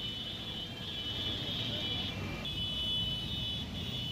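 Slow road traffic in a jam: a steady low hum of vehicle engines and tyres, with a steady high-pitched whine over it that breaks off briefly about two seconds in.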